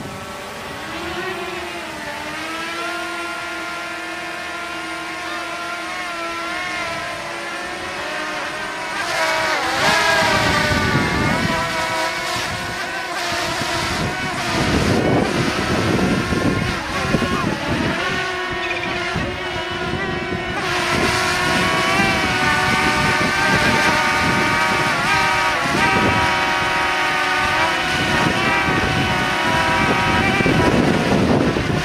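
Small quadcopter drone's propellers buzzing in flight, several close whining tones that rise and fall in pitch as it manoeuvres, getting louder about nine seconds in.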